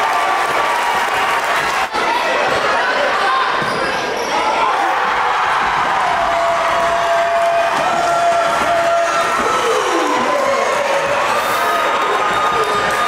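A basketball being dribbled on a gym floor amid crowd voices. Long held tones that slide in pitch run over it, with one falling tone near the end.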